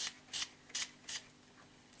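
Plastic fine-mist pump spray bottle of homemade acrylic spray paint being pumped in four quick spritzes, about two and a half a second, each a short hiss.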